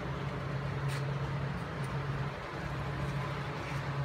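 Steady low machine hum with a faint click about a second in.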